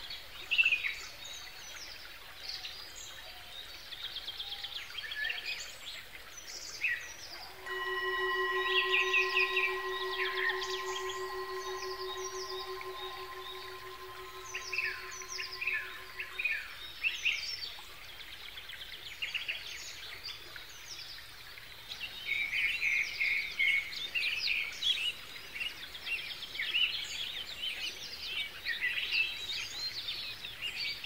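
Many small birds chirping and singing throughout, busiest near the end. About eight seconds in, a Tibetan singing bowl is struck and rings with one steady, gently wavering tone that fades out over about nine seconds.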